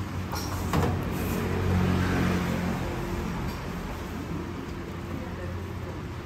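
Background ambience of a small eatery: a steady low hum with a rumble that swells and fades about two seconds in, a short knock just under a second in, and faint voices.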